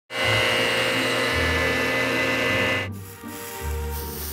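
A stationary woodworking machine running as a wooden board is fed through it, a steady loud whine that cuts off abruptly about three seconds in, over background music with a bass line.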